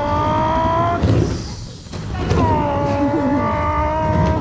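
Skateboard wheels rolling across a plywood bowl: a rumble with a few steady ringing tones, in two passes with a short lull between about one and two seconds in.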